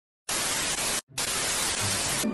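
Television static hiss: an even white-noise rush that starts a moment in, drops out briefly about a second in, then resumes.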